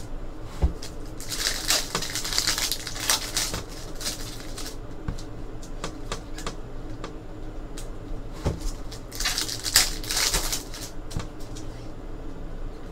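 A stack of Bowman Chrome baseball cards slid and flipped one at a time in the hands: scattered sharp clicks, with two longer stretches of rapid sliding rustle, one starting about a second in and one about nine seconds in.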